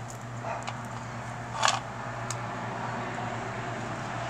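Steady background machine hum, with a brief handling rustle about one and a half seconds in and a faint click soon after as a small folding metal Esbit stove is handled.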